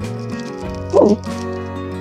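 Background music with a steady tune; about a second in, one short, loud yelp-like call with a wobbling pitch.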